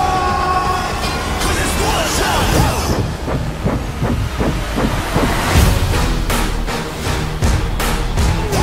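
Action film-trailer score with a driving rhythm, layered with sound effects and a run of hard percussive hits in the second half.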